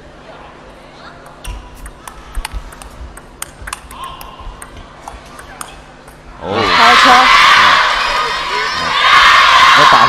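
A table tennis ball clicking back and forth off bats and table during a rally of about four seconds. Then, about six and a half seconds in, a crowd breaks into loud cheering and shouting as the point ends.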